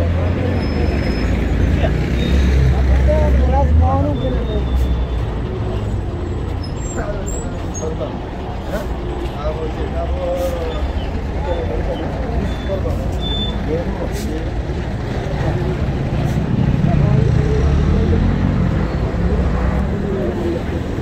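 Busy street ambience: motor traffic with people talking around. A heavy engine rumble is loudest in the first few seconds and swells again near the end.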